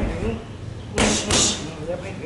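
Two punches in quick succession from boxing gloves hitting a trainer's belly pad, sharp slaps about a second in, with a lighter thud at the start.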